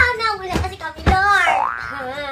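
Cartoon 'boing' sound effects: two short knocks, then about a second in a louder springy twang with a wobbling pitch that fades away.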